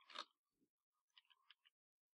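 Near silence, with a brief faint sound at the start and a few faint small clicks a little past the middle.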